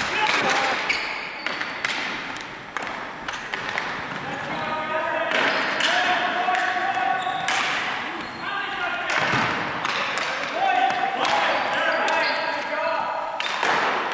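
Ball hockey play on a hardwood gym floor: sharp clacks of sticks and the ball hitting the floor and each other, with players' voices calling out, echoing in the hall.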